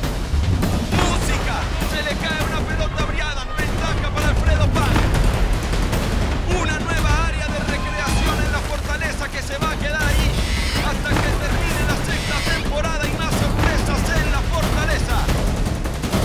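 Shouting voices of competitors and teammates over background music, with scattered sharp knocks and clatter from the obstacle course.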